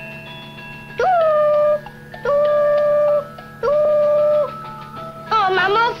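A young boy's voice imitating a train whistle: three long, level hoots, each scooping up in pitch at the start, over faint background music.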